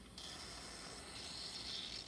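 A steady high hiss that starts abruptly just after the start.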